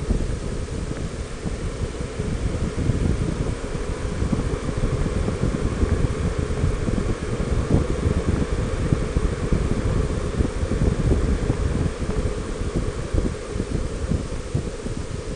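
Wind rushing and buffeting over the microphone of a camera mounted on a Honda Gold Wing 1800 motorcycle at road speed. Motorcycle running and tyre noise lie underneath.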